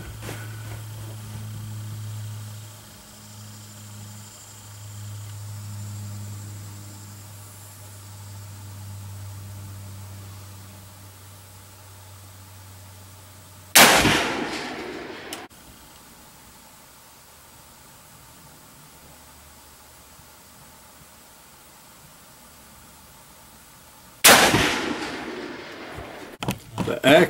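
Two rifle shots from a Savage 99 lever-action rifle fired from a bench rest, about ten seconds apart, each a sharp report that trails off over a second or so.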